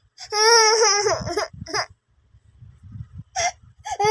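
A toddler's whining cry: one loud, wavering wail of about a second near the start and a shorter one after it, then low rumbling handling noise and a brief vocal sound near the end.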